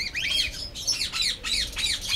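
Cockatiels squawking in a fast run of short, harsh, repeated calls, about five a second.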